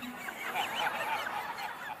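A congregation laughing, many voices at once in short overlapping bursts, in response to a humorous line.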